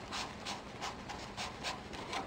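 Tip of a two-way glue pen rubbing on a paper cut-out in quick, faint strokes, about five or six a second.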